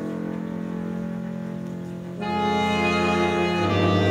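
Live chamber orchestra of bowed strings, woodwinds and double bass playing sustained chords. A softer held chord gives way, a little past halfway, to a fuller and louder entry of more instruments, and a low bass note joins near the end.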